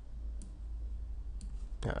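Two sharp computer mouse clicks about a second apart, made while adjusting a colour gradient in editing software, over a steady low hum.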